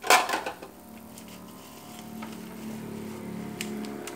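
A loud clatter as items on stacked plastic crate trays are handled, dying away within half a second, followed by a few light clicks. A steady low hum builds underneath toward the end.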